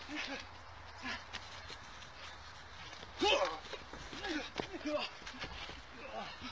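Short vocal shouts and grunts from people play-fighting, several brief cries in a row, the loudest about three seconds in.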